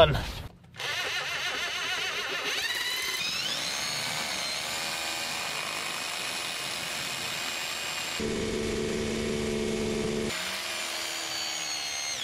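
Bosch electric drill boring a long pilot hole through a thick stone wall. The motor whine rises as it speeds up about three seconds in, then runs steadily under load. A deeper tone joins for about two seconds near the end.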